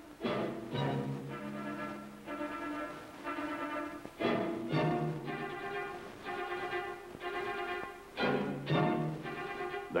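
Orchestral background music led by strings, playing held chords that change every second or two.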